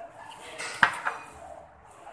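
Eating by hand from a ceramic plate at a table, with one sharp click a little under a second in, the loudest sound, and a few softer clicks around it.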